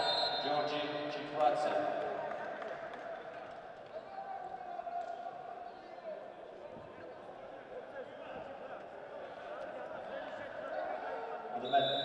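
Reverberant arena sound with a distant public-address voice and the sharp slaps and thuds of two heavyweight wrestlers grappling, loudest about a second in and again near the end. A short high whistle blast sounds right at the end.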